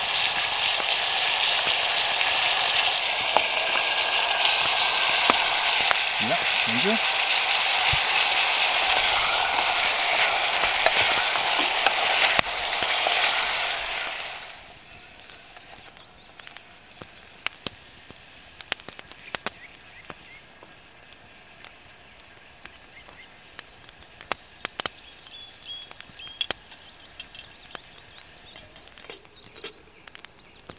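Bacon and chopped onions sizzling loudly in a hot iron pot over an open fire. About halfway through, the sizzle stops abruptly, leaving a much quieter outdoor background with scattered small clicks.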